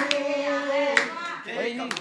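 Men singing a slow song in held notes, with a hand clap about once a second keeping time.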